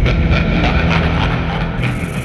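Cinematic trailer sound design under a title card: a loud, steady low drone with a quick, faint pulsing rhythm, and a high hiss swelling in near the end.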